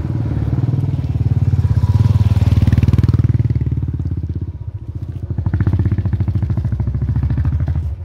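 A motorcycle engine runs under load as the bike passes close by and climbs a steep lane, with fast, even firing pulses. It is loudest about two to three seconds in, dips briefly just before halfway, then picks up again.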